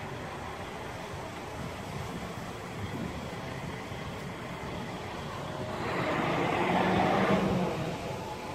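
Steady vehicle engine and traffic noise, with a louder rushing swell and a low hum that rises and fades over the last two seconds or so.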